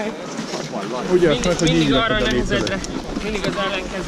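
People's voices talking, with a low rumble underneath from about a second in.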